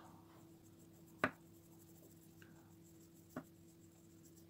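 A thin paintbrush painting on a pebble: quiet strokes with two short sharp taps, one about a second in and one past three seconds.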